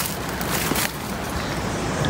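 Footsteps in sandals on dry leaves and loose stones, a few steps in the first second, over steady wind noise on the microphone.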